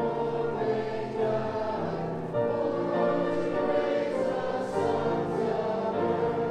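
Many voices singing a hymn together in slow, held notes.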